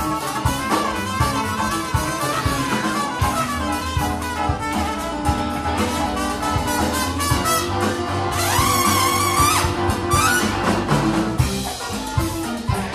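Live jazz band playing: trumpet and saxophone lead over electric guitar and drums. About eight and a half seconds in, a rising slide goes up into a held high note.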